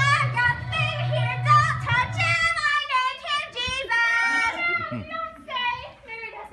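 Children's voices singing a song over musical accompaniment. The low accompaniment notes stop about two and a half seconds in, and the singing carries on.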